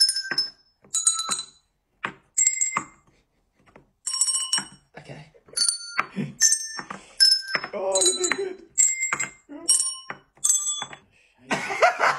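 A set of colored tuned desk bells, pressed one at a time. They ring out a sequence of notes, each at a different pitch, about one or two strikes a second. Laughter breaks in near the end.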